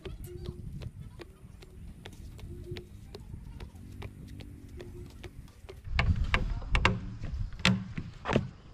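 Footsteps on the wooden planks of a rope suspension bridge, with small regular clicks and knocks as the planks take each step. About six seconds in come louder thuds and knocks of feet on a wooden platform.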